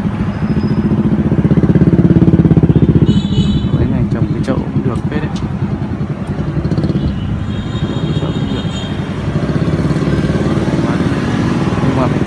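A motorbike engine running close by, loudest about two to three seconds in, then a steadier engine hum continuing underneath. A brief high-pitched beep sounds about three seconds in.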